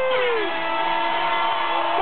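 Sound of a live hip-hop show: several long held tones, one sliding down in pitch about half a second in and then holding lower.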